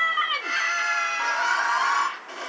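Animated film trailer soundtrack played through a television speaker: a held, high cry slides down in pitch about half a second in. It gives way to a steady, siren-like sound of several held tones.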